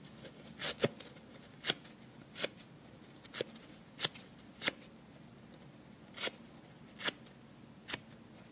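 Dry soft yellow kitchen sponge being ripped into small pieces by hand: short, crisp tearing sounds, about ten of them, roughly one a second or faster, with a longer pause about halfway through.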